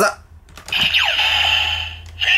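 A plastic click, then the DX Ziku-Driver toy belt's speaker plays electronic finisher-mode sound effects: a bright, high sustained tone with a falling sweep, lasting about a second before cutting off.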